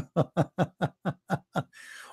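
A man laughing: a run of about eight short chuckles at about four a second, fading into a faint breath near the end.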